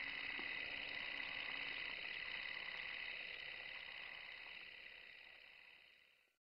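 A steady, fairly high static-like hiss that fades out over the last couple of seconds.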